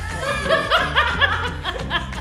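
A woman laughing in a run of quick bursts, with background music playing underneath.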